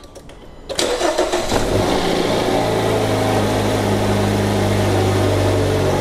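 2015 Dodge Dart's four-cylinder engine cranked and started about a second in, catching quickly and settling into a steady idle; the crank is a normal one, as the battery tester reports.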